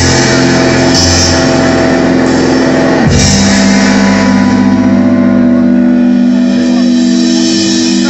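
Live blues-rock band playing loud: electric guitar and bass holding long sustained notes over drums, with a sharp drum or cymbal hit about three seconds in.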